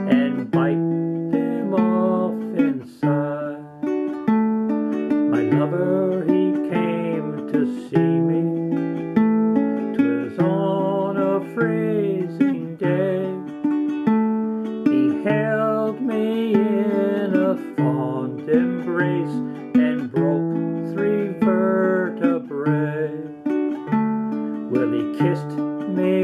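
Ukulele strummed in a steady rhythm, accompanying a man singing a folk song.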